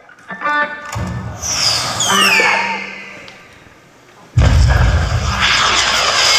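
Live rock band opening a song: a low rumble with high falling glides that fades away, then the full band crashes in loudly about four and a half seconds in.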